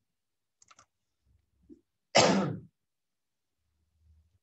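A single short cough about two seconds in, sudden and loud, with a few faint clicks just before it.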